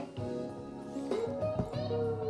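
Guitar music played through a JBL Pulse 2 portable Bluetooth speaker, heard as held notes with a few short pitch slides.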